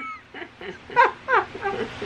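A woman's high-pitched giggles and squeals: several short calls, each falling in pitch, a few tenths of a second apart.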